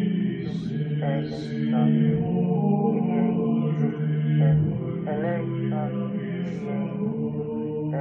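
Devotional chant: a voice singing a slow, wavering melody over a steady low drone.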